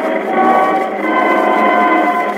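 Orchestral accompaniment from a 1918 acoustic 78 rpm disc transfer: several instruments holding and moving between sustained notes. The sound is narrow and muffled, with nothing above the upper midrange.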